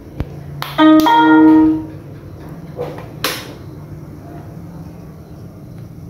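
Electric scooter being switched on for the first time with a newly fitted Votol EM100S controller: a click, then an electronic start-up chime about a second long as the system powers up, and a second sharp click a couple of seconds later. A faint steady hum runs underneath once it is on.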